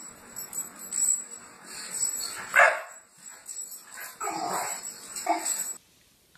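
A dog barking several times, the loudest bark about two and a half seconds in; the sound cuts off just before the end.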